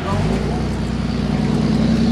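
A steady low engine hum, as of a vehicle idling, starting abruptly.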